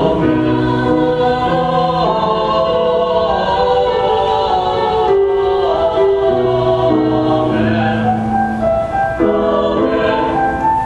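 A young man and a young woman singing a duet together, holding long notes.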